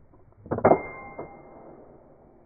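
Double rifle chambered in 500 Nitro Express being broken open, with a sharp metallic clack about half a second in as the ejector throws out the spent brass case. A high metallic ring fades over about a second, with a softer click partway through.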